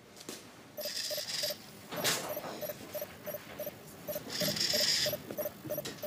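A toy humanoid robot making electronic sounds: a steady beeping about three times a second, with two short whirs, one about a second in and another near the five-second mark.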